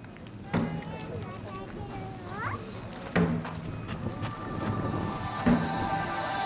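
Entrance music starting over outdoor loudspeakers: heavy drum hits about every two and a half seconds, with sustained pitched tones joining in from about four seconds in, over the murmur of a seated crowd.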